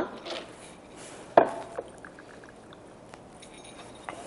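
Bottle and glassware handling while hazelnut liqueur is poured into a small measuring cup: one sharp clink about a second and a half in, a lighter one just after, then a few faint ticks.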